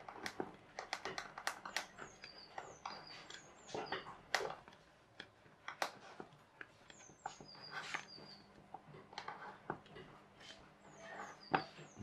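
Knife blade scoring round a thin plastic drinks bottle as the bottle is turned, giving irregular sharp clicks and scratchy scrapes. Short runs of high, falling chirps come and go behind them.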